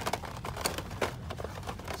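Indoor store background: a low steady hum with scattered small clicks and rustles.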